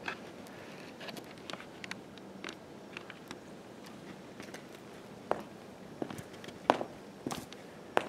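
Footsteps on brick paving, a scatter of short light taps, with a few sharper ones in the second half.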